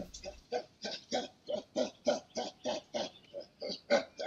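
Male chimpanzee pant-grunting: a rapid run of short grunts, about three a second, starting about half a second in. The call signals submission and making contact, given here by a male joining a group in the hope that others will share food with him.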